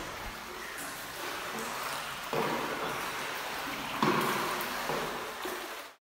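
Swimming-pool water splashing and lapping, a steady wash of noise with two sudden louder swells about two and a half and four seconds in, then a quick fade out at the very end.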